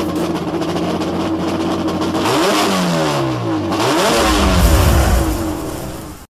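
Car engine held at steady high revs, then its pitch sweeping down and back up in overlapping glides from about two seconds in before it steadies again.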